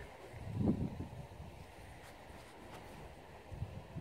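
Faint wind rumbling on the microphone outdoors, with a brief soft sound just under a second in and a few faint ticks near the middle.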